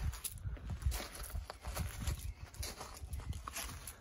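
Footsteps crunching on loose gravel as someone walks along, a run of short irregular steps.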